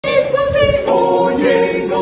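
A cappella Afro-gospel choir of men and women singing an Igbo gospel song together, with no instruments.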